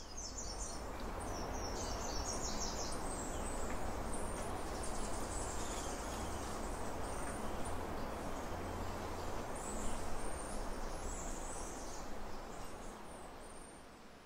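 Mixed calls of many cloud-forest birds over a steady background hiss, with runs of quick, high repeated notes in the first few seconds and again later.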